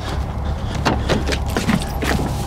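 Car door being handled and opened as someone gets in: a quick run of clicks and knocks starting about a second in, over a steady low rumble.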